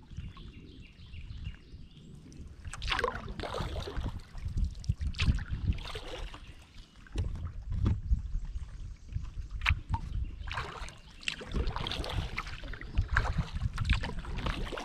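Kayak paddle strokes: the blades dip and splash water in bursts every two to three seconds, over a steady low rumble.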